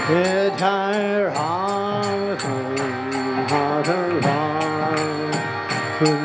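Devotional mantra chanting: a voice sings long held notes that glide between pitches, over small hand cymbals struck in a steady beat of about three strikes a second.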